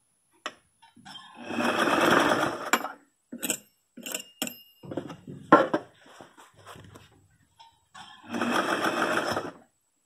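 Electric sewing machine stitching in two short runs, one about a second in and one near the end, each about a second and a half long. Short clicks and rustles of fabric being handled come between the runs.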